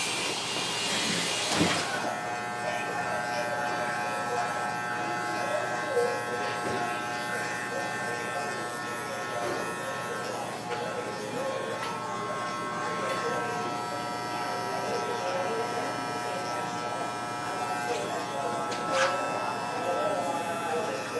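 Oster Model 10 electric barber clipper buzzing steadily as it trims a man's beard. The steady tone settles in about two seconds in.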